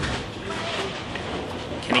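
Bowling-centre background noise: a steady rumble of balls rolling on the lanes under faint voices of spectators.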